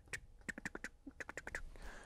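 Faint, short taps of a one-inch brush loaded with oil paint dabbed against the canvas, about ten in two quick runs.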